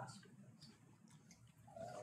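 Near silence: room tone with faint murmured voices, a little clearer near the end.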